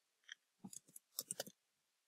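Faint clicking from a computer mouse and keyboard as a line of text is selected and copied: a single click, then two small quick clusters of clicks about half a second apart.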